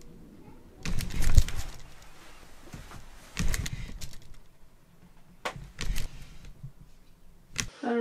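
Knocks and clatter of wooden kitchen drawers being fitted and slid shut in a cabinet, in several short bursts a second or two apart.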